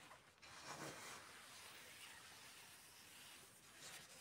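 Faint rustling of clothing and handling noise on a handheld phone camera as the person filming moves through a small room. It runs steadily, with a brief break just after it starts.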